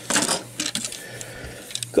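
Hard plastic toy parts clicking and knocking as a piece is pulled off a transforming train-robot figure and handled, a quick cluster of clicks at first, then a few light ticks.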